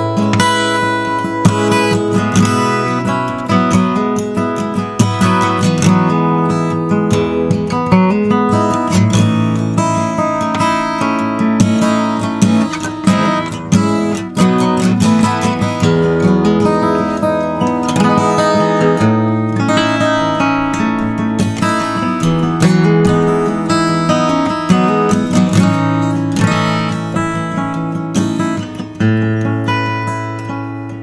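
Acoustic guitar being played, a continuous run of picked notes and strummed chords.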